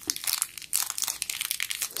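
Small clear plastic bag crinkling and crackling in the fingers as it is worked open, a quick irregular run of sharp crackles.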